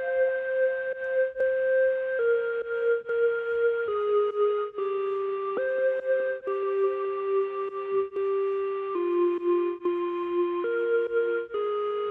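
Synthetic recorder preset from Xpand!2 playing a slow, simple F-minor melody of single held notes through Valhalla reverb. The notes step downward, leap back up about halfway through, then step down again. An Effectrix effect adds a reverse note halfway through the bar.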